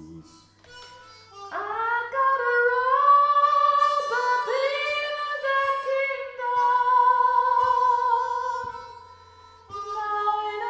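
Harmonica (mouth harp) playing a solo break of held chords, with notes bent up into pitch at the start of phrases. It comes in about a second in and fades out near the end.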